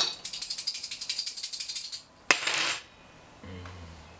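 Small metal pieces rattled rapidly by hand on a tabletop, a quick run of clinks lasting about two seconds, then a second short burst of rattling a moment later.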